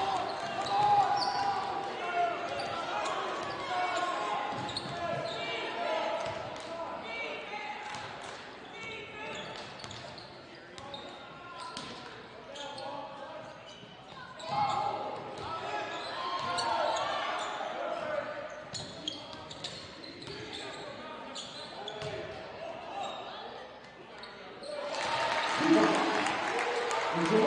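Gymnasium sound of a basketball game in play: indistinct voices from players and crowd echoing in the hall, with a basketball bouncing on the hardwood floor and scattered sharp knocks. The crowd noise swells near the end.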